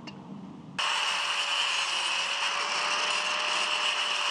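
An angle grinder with a thin cutting disc slicing through 3 mm steel plate. The sound comes in abruptly about a second in: a loud, steady, high-pitched grinding hiss over an even motor whine.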